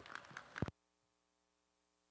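Faint, scattered hand claps from a sparse arena crowd that cut off abruptly less than a second in, leaving only a faint electrical hum.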